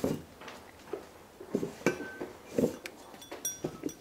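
Metal parts clinking and knocking as they are handled on a workbench: a string of separate knocks and clinks, the loudest just at the start, several leaving a short ringing tone.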